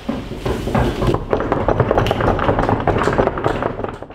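Audience applause: scattered claps at first, filling out into dense clapping from many hands about a second in.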